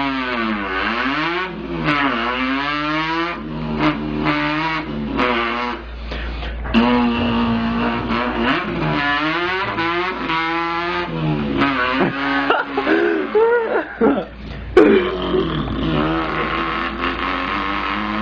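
A man's voice imitating a car engine while drifting: the pitch climbs in repeated revs that fall away as if the gears are being shifted, with a few short breaks and sharper bursts between the runs.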